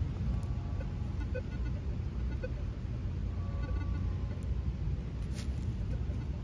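Steady low outdoor background rumble, with a few faint short thin tones in the first second and around the middle, and no distinct event.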